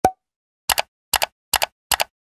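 Animated on-screen graphics sound effects. A single short pop sounds at the start, then four quick double clicks follow about 0.4 s apart as further buttons and banners pop in.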